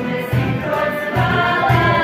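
A small female vocal group singing together, with a low, even beat underneath from the accompanying instruments.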